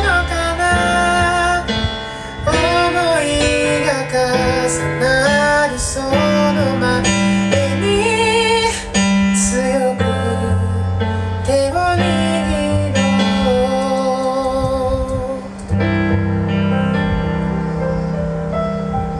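Music: a high voice singing a sliding melody with vibrato over sustained keyboard chords and a bass line, with a brief drop in loudness about three-quarters of the way through.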